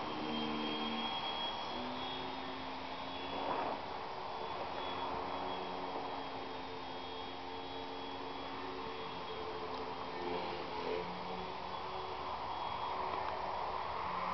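Small battery-powered electric motor and propeller of a foam RC aerobatic plane in flight: a steady hum with a thin high whine, its pitch stepping up and down with throttle.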